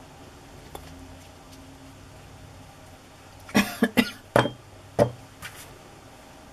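A short fit of coughing: five or six quick, loud coughs in a row about three and a half seconds in, the last a little apart from the rest.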